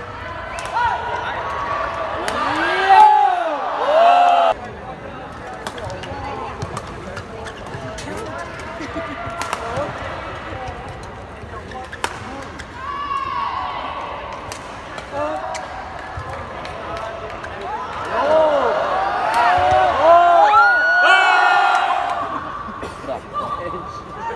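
Badminton singles rally: sharp racket strikes on the shuttlecock scattered throughout, and shoes squeaking on the court mat in two flurries, a few seconds in and again near the end, over a background of arena crowd noise.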